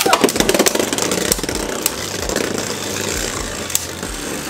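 Two Beyblade Burst spinning tops, Dead Phoenix and Cho-Z Valkyrie, whirring in a plastic stadium just after launch. There is a rapid clattering of clicks for the first second or so as they skid and knock against each other and the stadium wall. This settles into a steady whir, with an occasional click of contact.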